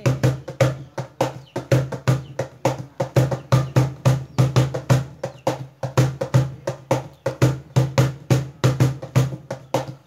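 Instrumental break in a Bengali folk song: a fast, steady hand-drum rhythm with no singing over it.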